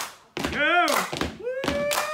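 Shouted calls over sharp claps and thuds. There is a short rising-and-falling 'hey' about half a second in, then a long call held on one pitch from about one and a half seconds in, with hand claps and dancers' foot stomps around it.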